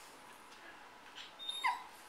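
A small dog gives a brief high-pitched whimper, a few short squeaks about a second and a half in, ending in a falling squeal.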